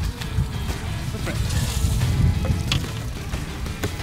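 Handling at a fibreglass boat's live well: a few knocks as a fish is put in, and the lid knocks shut just before the end. Under it runs a low rumble with background music.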